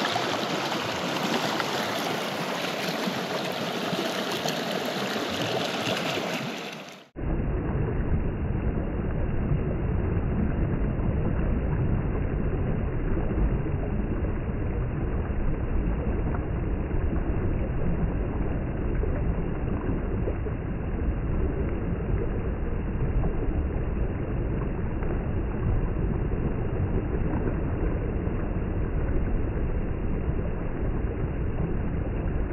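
Small mountain stream running, a steady rush of water. About seven seconds in the sound drops out for an instant and comes back duller and lower, a rumbling rush with the high end gone.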